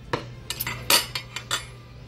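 Metal forks clinking against ceramic plates and bowls: a quick, uneven run of about eight sharp clinks, the loudest about a second in.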